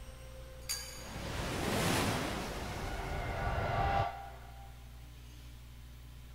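TV-drama sound effects: a sharp knock just under a second in, then a rushing hiss with high ringing tones that builds, holds, and cuts off abruptly about four seconds in, leaving only a low hum.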